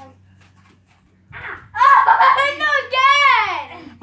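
A child's loud, high-pitched, wordless voice that comes in about two seconds in and slides down in pitch at its end, after a near-quiet first second.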